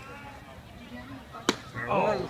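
A single sharp pop about a second and a half in: a pitched baseball smacking into the catcher's mitt. Low crowd chatter runs underneath.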